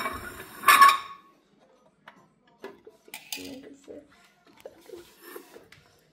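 Metal clinks and clatter as a robot-shaped clock with metal legs is handled and turned over. The clatter is loudest in the first second, followed by faint clicks and scrapes.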